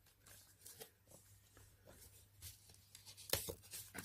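Faint rustling and soft crackling of paper being handled as the envelope pages of a paper craft booklet, still sticking together, are pulled apart and fanned open. A louder crackle comes a little over three seconds in.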